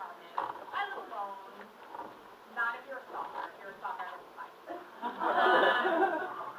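A woman's voice speaking on stage in a hall, indistinct, with a louder outburst of voice about five seconds in.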